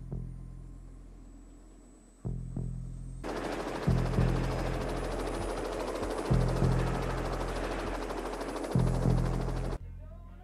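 Helicopter rotor and turbine running as it lifts off, a dense, fast-chopping noise that comes in about three seconds in and cuts off abruptly near the end. Under it, the film score's low two-beat bass pulse repeats about every two and a half seconds.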